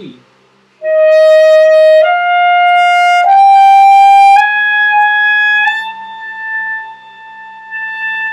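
Alto saxophone playing a slow rising line of five held notes, high C, D, E, F and then high F sharp on the front-key fingering, each step about a second long. The last note, the high F sharp, is played softer and held about three seconds.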